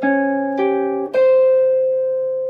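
Clean hollow-body electric jazz guitar playing single picked notes: two quick notes, then a note held from about a second in, as the line resolves.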